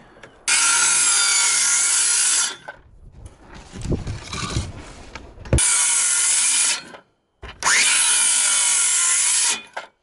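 Cordless circular saw cutting wooden boards, in three cuts of about two seconds, one second and two seconds, with quieter handling sounds between the first and second cut.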